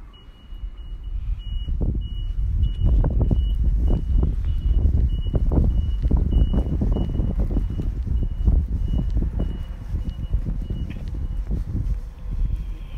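A truck's reversing alarm beeping repeatedly over the low rumble of its engine, which grows louder about a second in; the beeping stops about a second before the end.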